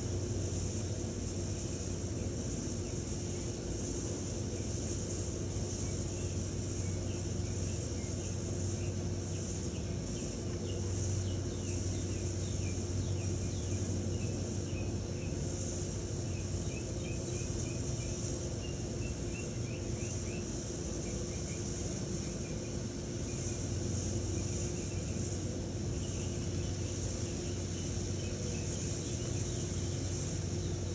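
Steady background ambience: a continuous high hiss over a low hum, with faint short chirps through the middle.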